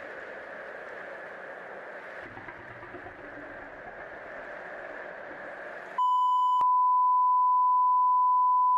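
A steady, featureless noisy hiss, then about six seconds in an abrupt cut to a loud, single steady test tone, the kind that goes with TV colour bars and marks the recording cutting out. A higher tone sounds with it for the first half second.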